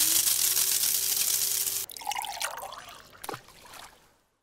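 Sound effect of coffee being poured into a cup: a loud splashy pour whose pitch rises as the cup fills, stopping about two seconds in. Fainter splashing follows, with a sharp click about three seconds in.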